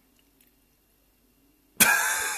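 Near silence for most of the time, then, near the end, a man's sudden loud vocal burst, cough-like, starting abruptly.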